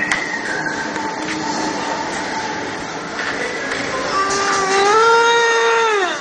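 A vehicle horn blaring over the noise of a running vehicle. The horn comes in about four seconds in, rises slightly and holds, then drops in pitch at the very end as the vehicle comes on.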